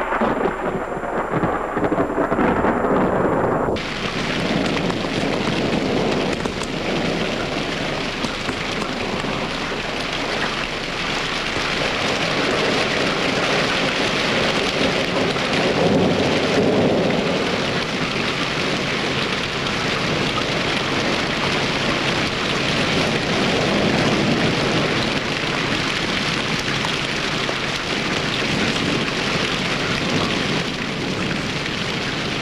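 A low rumble of thunder, then heavy rain falling, starting abruptly about four seconds in and going on as a steady hiss that swells now and then.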